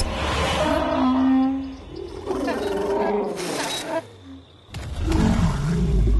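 Cartoon dinosaur vocal calls in three bursts, pitched and bending, one held steady for nearly a second, over background music.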